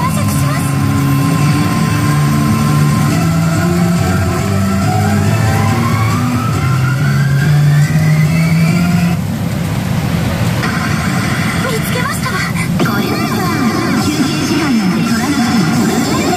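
Pachinko machine playing its anime soundtrack, with character voice clips and electronic effects over it. A long rising-pitch sound effect runs through the middle of the first half, and the sound changes abruptly about nine seconds in, typical of a reach or stage change in play.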